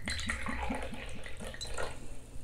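Soju glugging out of a green glass Chamisul bottle into a small shot glass: a quick run of gurgling glugs, about four a second, that stops about a second and a half in as the glass fills.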